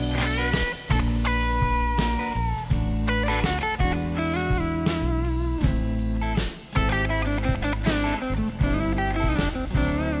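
Blues-rock band playing: an electric guitar lead with sustained notes that bend in pitch, over a steady drum beat and bass guitar.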